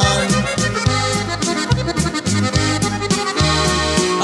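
Norteño corrido music in an instrumental break between sung verses: an accordion plays a melody over a steady bass line and strummed rhythm.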